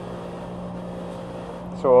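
A steady, low, unchanging hum, like an electric motor running nearby.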